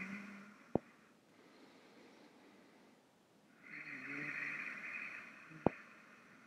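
A person's slow, deep breathing, heard faintly as a soft hiss: one breath trails off just after the start and another runs from about four to five and a half seconds in. A small click follows each breath.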